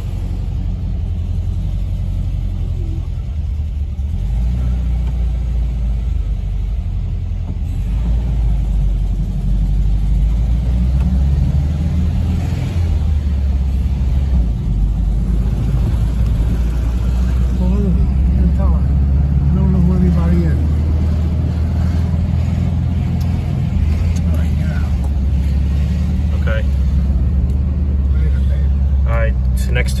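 Engine and road rumble of a moving van or small bus heard from inside the cabin, a steady low drone that grows somewhat louder after about ten seconds.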